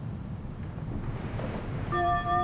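A low, steady rumble that slowly grows louder, with clear bell-like notes of the song's intro entering at the very end.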